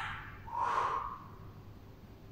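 A single short, breathy human breath about half a second in, taken during a Pilates exercise, followed by a quiet room with a faint steady low hum.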